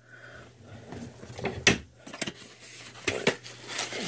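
Hard plastic coin slabs clicking and knocking as they are handled and set down, several sharp taps with the loudest about halfway through.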